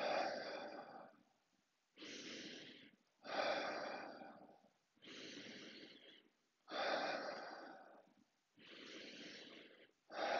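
A man takes slow, deep breaths: a quieter in-breath lasting about a second, then a louder out-breath through the open mouth that starts sharply and fades over about a second and a half. There are about three full breaths, and a fourth out-breath begins at the very end.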